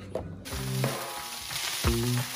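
Fried rice sizzling in a hot skillet, the hiss starting abruptly about half a second in, under background music with a beat about once a second.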